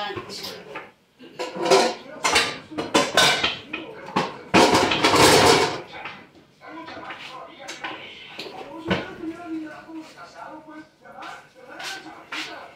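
Kitchenware being handled: a run of knocks and clatters of dishes and pans, the loudest a rasping scrape lasting over a second about halfway through.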